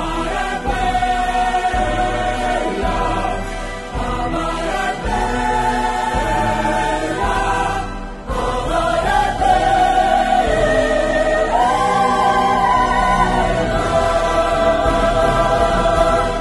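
An ensemble of voices sings together in long held notes over instrumental accompaniment: a song from a stage musical. There is a brief dip about halfway through.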